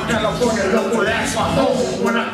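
A man rapping into a handheld microphone over a loud hip hop backing track, played live through a club PA.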